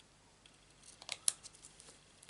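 Paper and card stock handled and pressed down by hand, a short cluster of crisp clicks and crackles about a second in, with a few fainter ones just after.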